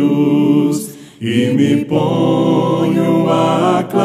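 Voices singing a Portuguese worship song in long held notes, with a short break about a second in before the singing picks up again.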